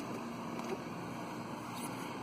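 Steady background rumble and hiss with no distinct event.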